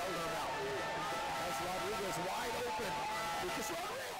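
Indistinct voices and the murmur of a small stadium crowd at a soccer match, with a faint steady whine beneath them. The sound eases down near the end.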